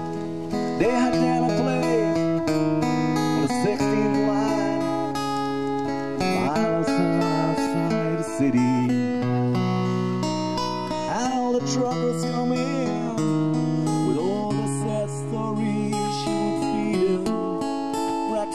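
Live band music led by strummed acoustic guitar, with held bass notes and a melody line that bends and glides over them.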